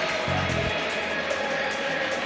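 Background music with a pulsing bass line.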